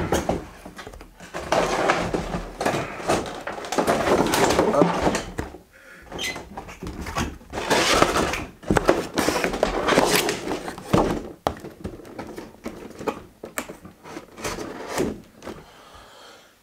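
Cardboard packaging being handled: boxes rubbing and sliding against each other in two longer bursts, with a few light knocks, then quieter rustling near the end.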